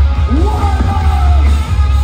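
A punk rock band playing live through a festival PA, heard from the crowd: heavy bass and guitars under a shouted vocal that rises and is held for about a second.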